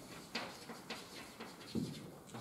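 Chalk on a blackboard: short taps and scratches as a line is written, with a louder, short low-pitched sound near the end.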